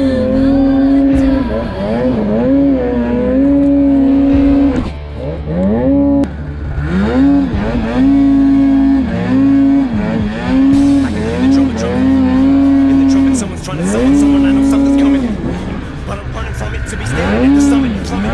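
Snowmobile engine revving high under load in deep powder, its pitch repeatedly dropping off and climbing back up as the throttle is let off and opened again.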